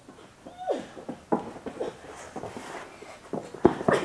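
Soft, scattered taps and thuds of hands and feet on a carpeted gymnastics floor as children walk on their hands, with a sharper thud near the end as one comes down out of the handstand.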